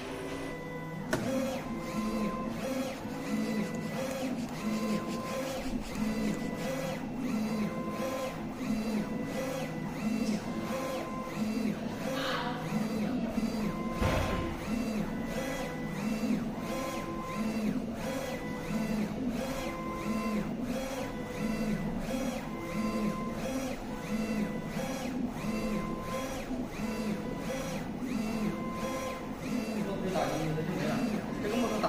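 A 3360 UV flatbed inkjet printer is printing on acrylic, its print-head carriage shuttling back and forth in a steady repeating rhythm from about a second in. A short, steady tone recurs every couple of seconds, and there is a single low thump about 14 seconds in.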